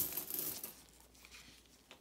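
A short rustle of gloved fingers turning a wheat penny over, fading into faint handling sounds, with a light click near the end.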